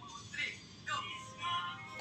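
Faint recorded singing played through a smartphone's small speaker, in short phrases.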